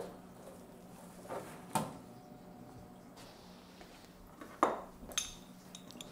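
A handful of scattered metallic clinks and knocks from a steel vise handle being handled at a CNC milling machine's vise, the loudest near the end, over a faint steady hum.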